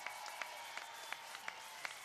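Audience applauding, heard faintly as scattered, irregular claps over a steady hiss.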